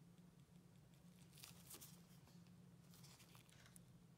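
Near silence over a low steady hum, with two brief bursts of faint rustling and crackling, about a second and a half in and again about three seconds in, from nitrile-gloved hands handling a small crown and a stain brush.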